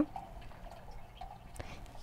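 A few faint light clicks of expanded clay pebbles dropped into a plastic net pot, over quiet room tone.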